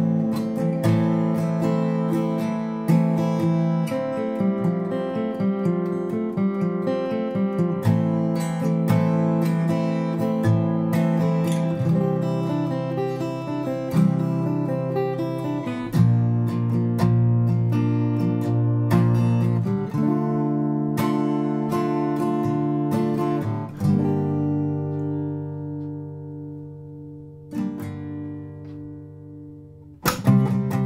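Faith steel-string acoustic guitar playing chords with a melody line picked around them, the string-section line worked over F and C chords. About 24 seconds in, a final C chord is struck and left to ring and fade out.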